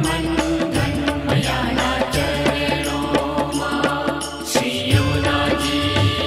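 Gujarati devotional song music (bhajan) with a steady percussion beat over sustained low tones, the beat thinning briefly about four and a half seconds in.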